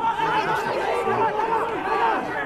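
Mostly speech: TV commentators talking, one laughing, over background crowd chatter.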